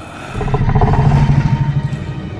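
A low, rough growling rumble that comes in about a quarter second in and holds steady.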